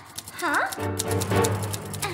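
Background music with rapid, regular ticking, and a short cartoon-voice whine that swoops down and back up about half a second in.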